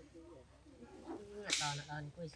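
Low voices, with a sudden sharp hiss-like swish about one and a half seconds in that fades over about half a second.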